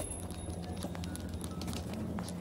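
Footsteps on a hard tiled floor: irregular sharp clicks over a steady low hum.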